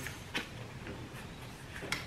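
Faint handling of paper Lenormand cards as they are lifted and held up, with two soft clicks, one just after the start and one near the end, over quiet room tone.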